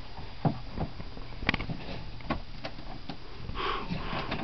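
Pets sniffing and eating pellet food, with scattered light clicks and crunches.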